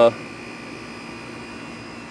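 Steady background noise with a faint hum, no distinct sound event, after the tail of a spoken 'uh' at the very start.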